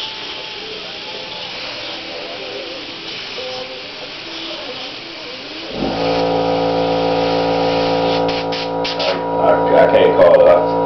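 Paasche Talon airbrush spraying with a steady hiss of air for about the first six seconds. Then loud music with guitar comes in and covers it.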